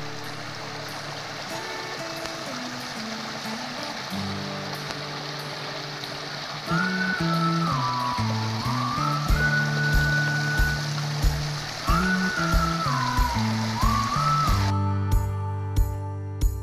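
A shallow rocky stream rushing over stones, under background guitar music; a sliding melody comes in about seven seconds in. The water sound stops near the end, leaving the music with a regular beat.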